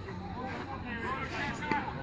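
Faint, indistinct voices of players and spectators at a football match: scattered calls and chatter without clear words.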